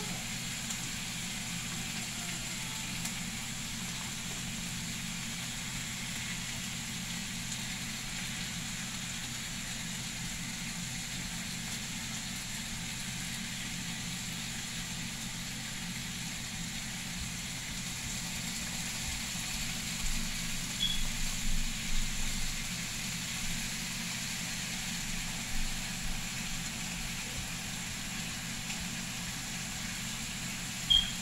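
Raw bacon strips sizzling in a hot frying pan, a steady hiss over a low steady hum. A few short knocks and clatters come about two-thirds of the way through as strips are laid in and the pan is handled.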